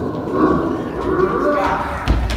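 A group of children imitating a bull with their voices, several voices overlapping.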